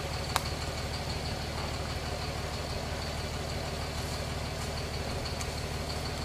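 An engine idling steadily, a low even hum, with one short click about a third of a second in.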